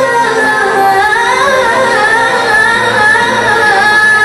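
A woman singing live through a microphone, an ornamented Arabic melodic line whose pitch winds up and down in quick turns.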